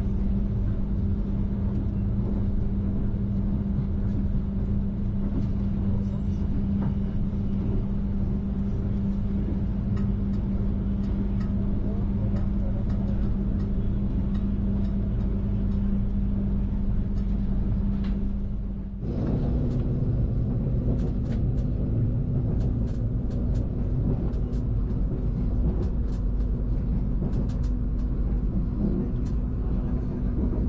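Steady rumble of a moving passenger train heard from inside the carriage, with a constant low hum. About two-thirds of the way through the sound dips briefly, then the hum sits a little higher and light clicks and rattles come through.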